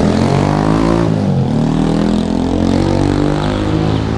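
Motorbike engine revving close by with a loud, unmuffled-sounding exhaust as it pulls away. Its pitch dips about a second in, then climbs and wavers with the throttle.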